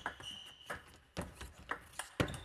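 Table tennis rally: the ball clicking off rackets and the table, a sharp knock about every half second.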